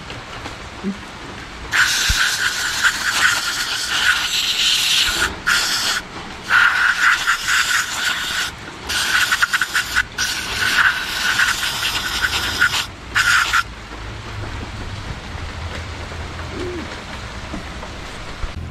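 Aerosol cleaner sprayed onto a scooter's front brake caliper to wash it: a loud hissing spray in several bursts with short breaks between them, starting about two seconds in and stopping just before fourteen seconds.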